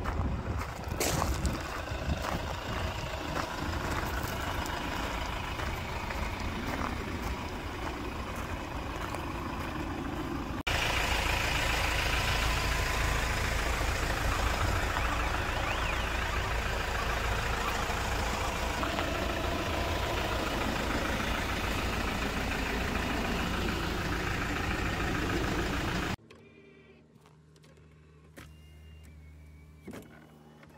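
Outdoor ambient noise on a handheld recording, with scattered handling clicks in the first third. After a cut it becomes a louder, even rushing noise. Near the end it drops to a much quieter low hum.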